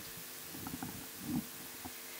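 Handheld microphone being picked up and handled: soft low rumbles and a few faint clicks, the largest bump about a second and a half in, over a faint steady hum from the sound system.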